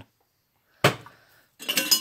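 A metal food can set down with a single sharp clink a little under a second in, ringing briefly. Then rustling handling noise as groceries are moved about.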